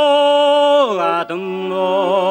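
Tuvan folk singing with bowed fiddle: long held notes with a slight vibrato and strong upper overtones, stepping down in pitch just before a second in, breaking off briefly, then resuming on a lower held note.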